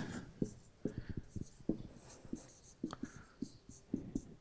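Marker pen writing on a whiteboard: faint, irregular short taps and strokes as the letters are written.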